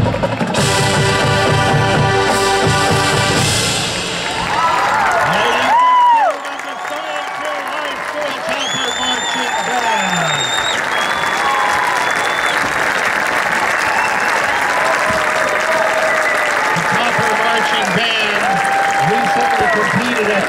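Marching band brass and drums holding a final chord that swells and cuts off sharply about six seconds in. Crowd cheering and applause follow, with whistles and shouts over them.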